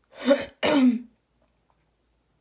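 A woman clearing her throat: two short, loud bursts back to back in the first second.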